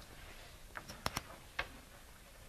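Chalk writing on a blackboard: a few sharp, irregular taps and clicks as the chalk strikes the board, bunched about a second in.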